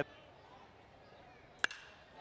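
A metal baseball bat striking a pitched ball: one sharp, ringing crack near the end, hit for a line drive, over faint background noise.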